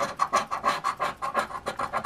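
Quick, rhythmic scraping of a scratch-off lottery ticket's coating by a hand-held scraper, about five strokes a second.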